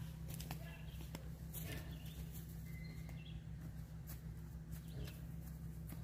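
Quiet woodland ambience: a steady low rumble with a few faint bird chirps and scattered small clicks.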